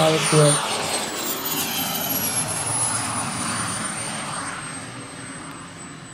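JetCat kerosene turbine of a large-scale RC Hawker Hunter model jet coming in to land, its high whine falling steadily in pitch while the overall sound fades.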